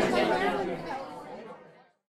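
Indistinct chatter of many voices, fading out to silence near the end.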